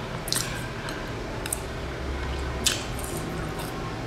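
Close-miked chewing of a sesame-coated cake: wet, squishy mouth sounds with sharp crackles about a third of a second in and again near three-quarters of the way through.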